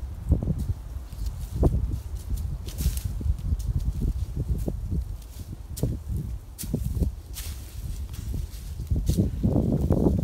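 Footsteps climbing a steep slope, crunching on dry fallen leaves and loose rocks in irregular steps and scrapes, over a low rumble on the microphone.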